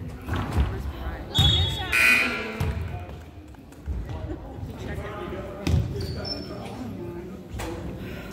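Basketball thumping on a hardwood gym floor, with several hits in the first two seconds and another near six seconds. Spectators' voices and shouts echo through the gymnasium.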